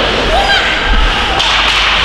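Ice hockey play: skate blades scraping the ice and a sharp crack of a stick on the puck, with shouts from players or spectators.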